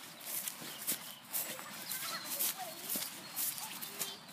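Footsteps swishing through long tussocky grass at about two strides a second.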